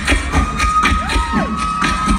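Live beatboxed drum beat, with even kick-drum thumps and sharp snare and hi-hat strokes made by mouth. Audience cheering over it, with a long high note held from about half a second in.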